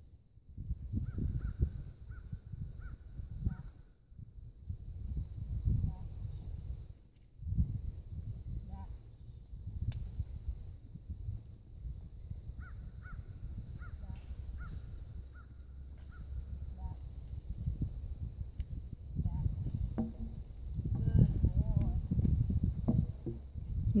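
Wind buffeting the microphone in uneven gusts, with a bird calling in two runs of short, evenly spaced calls, about two a second: one run near the start and one about halfway through.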